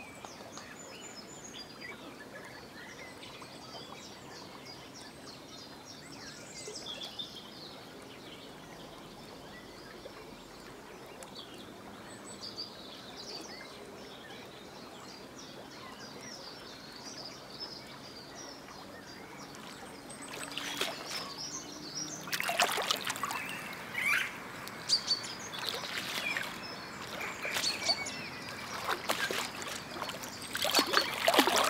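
Quiet river ambience with faint, scattered bird chirps. About two-thirds of the way through, louder irregular splashing and scuffling begins as Eurasian otters thrash in the shallows at the water's edge with a caught eel.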